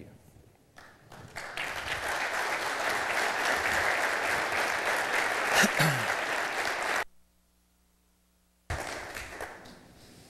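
Audience applauding, building about a second in and holding steady, then cutting off abruptly about seven seconds in. After a second and a half of near silence with a faint hum, the applause returns and fades away.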